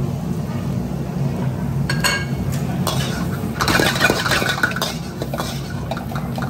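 Metal spatula scraping and clinking against a wok as fried rice is stir-fried, busiest a little past the middle, over a steady low hum.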